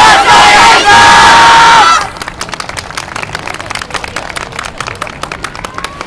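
A long shout into an overloaded microphone, so loud that it distorts, held for about two seconds. It stops abruptly and is followed by a dense, irregular scatter of sharp clacks, softer than the shout.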